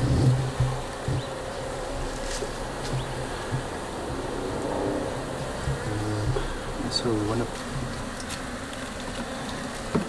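Honeybees buzzing steadily in an open Langstroth hive, a continuous low hum from a small, weak colony.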